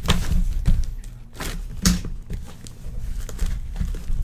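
A sealed cardboard shipping case being handled and turned over on a table, giving a few dull knocks and thumps, the loudest about two seconds in.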